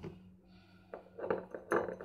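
Kitchenware being handled: a sharp knock at the start, then from about a second in a quick run of light clinks and knocks, over a faint steady hum.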